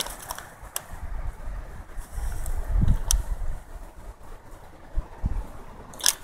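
Low rumble with a few faint, scattered clicks, the handling noise of a paper receipt and the recording device held in hand.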